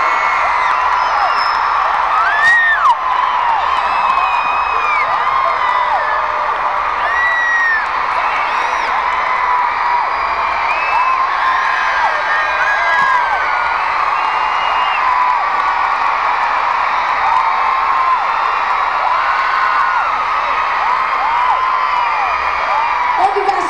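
Large arena crowd cheering and screaming without a break, many high shrieks and whoops rising and falling over a dense, steady wash of crowd noise.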